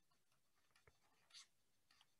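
Near silence with two faint ticks, a little under a second in and again about half a second later: a stylus tapping on a pen tablet while writing.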